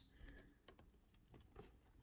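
Near silence, with a few faint clicks of glossy trading cards being shuffled in the hand.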